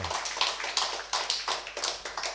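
Light applause from a small audience: sparse, separate hand claps, about five a second.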